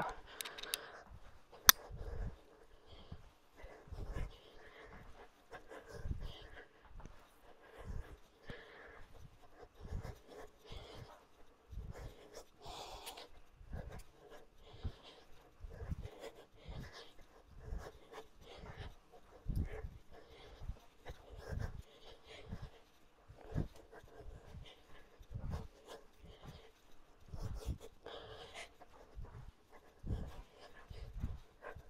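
A person panting hard through a round of punching exercise, with soft low thumps of feet stepping and pivoting on an exercise mat roughly every second.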